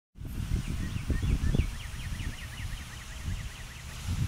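A small bird singing a quick run of high chirps, about eight a second, over the low rumble of wind on the microphone.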